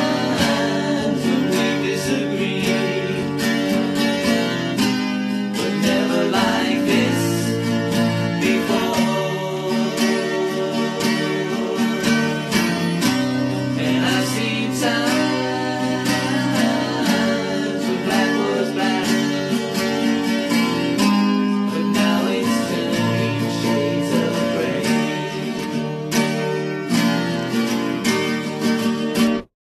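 Acoustic guitar strumming chords through an instrumental passage of a song, recorded live.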